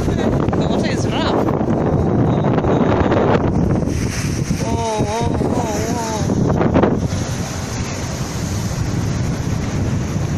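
Strong wind buffeting a phone's microphone, with the wash of sea surf under it. A brief wavering voice sounds about five seconds in.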